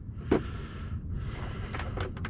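Steady low rumble of wind on the microphone, with one short sharp sound about a third of a second in and a few faint clicks near the end.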